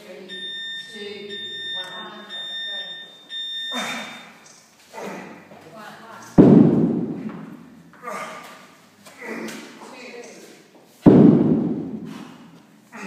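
A heavy Atlas stone dropped after being shouldered, landing with a loud thud on the rubber gym floor twice, about five seconds apart. Before that, a steady high electronic beep from a timer sounds for about three and a half seconds. Short shouts and grunts fall between the drops.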